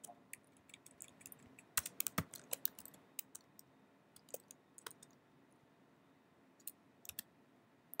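Faint computer keyboard keystrokes: a few scattered key taps, with a quick run of them about two seconds in and a couple more near the end.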